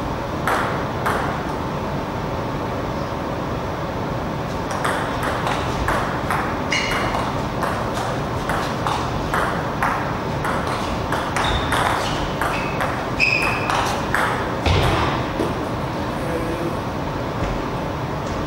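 Table tennis ball clicking off rackets and the table: a couple of single bounces at first, then a rally of sharp ticks, about two a second, some with a short high ring from the table. The rally ends with a heavier thump, over a steady background hum of the hall.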